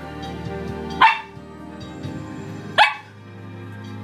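A collie-type dog barking twice: two short, sharp barks, about a second and nearly three seconds in. Music with steady held notes plays underneath.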